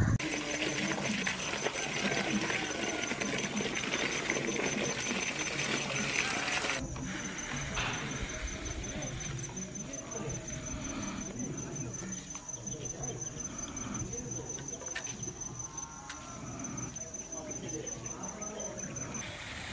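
Outdoor ambience with an insect's steady, high-pitched, evenly pulsing trill. For the first seven seconds it sits over a loud hiss that cuts off abruptly.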